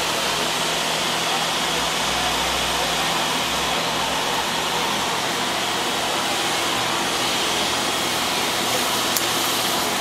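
Steady rushing noise from the cooling fans on an open overclocking test bench, with a faint steady hum, unchanging throughout.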